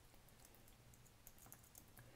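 Faint computer keyboard typing: a run of soft, irregular keystrokes entering a password.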